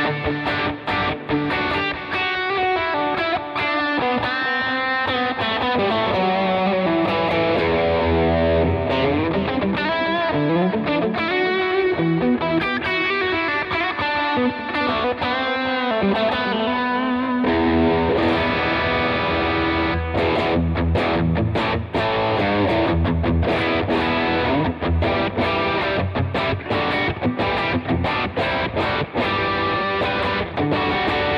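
Electric guitar played through a Line 6 Helix multi-effects preset with a distorted lead tone. It plays melodic single-note lines with sliding pitches in the middle, then fuller, lower notes from about two-thirds of the way in.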